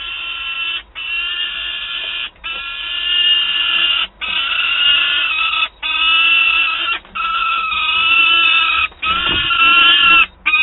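Peregrine falcon giving long, loud wailing calls, one after another with only short breaks between them.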